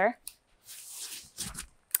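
Quiet rustling of a shoulder strap and handling of a small canister vacuum and its hose as it is slung onto a shoulder, with a soft bump about a second and a half in. The vacuum is switched off.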